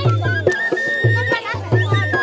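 Paddari folk dance song playing loud, with a heavy, steady drum beat under a high, held melody line, and voices over it.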